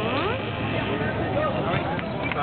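Autocross race car engines running as the cars drive past on a dirt track, mixed with spectators talking close by.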